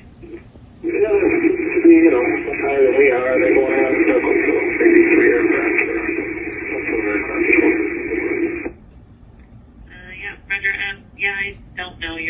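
Recorded air traffic control radio with the thin, narrow sound of a VHF transmission: one dense, unbroken transmission starts about a second in and cuts off abruptly after about eight seconds. Choppy radio speech follows near the end.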